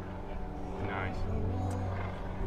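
A steady low mechanical hum, with faint voices of people nearby.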